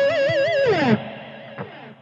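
Electric guitar holding the last note of a fast sweep-picked C-sharp minor seventh arpeggio with an even vibrato, then sliding down in pitch and dying away about a second in.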